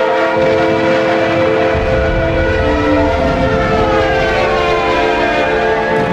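A train running with a low rumble that comes in about two seconds in, and its whistle sounding in long held tones, laid over sad string music.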